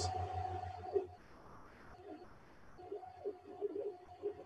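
Moving-head light fixture's stepper motors whining faintly as its focus is driven from the console. The steady tone cuts out about a second in and starts again twice.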